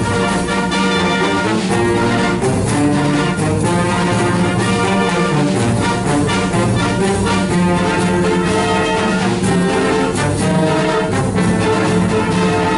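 College symphonic wind band playing live in a concert hall, with the brass to the fore.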